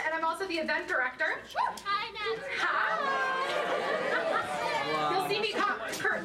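Speech: a woman talking into a microphone, with several voices overlapping around the middle.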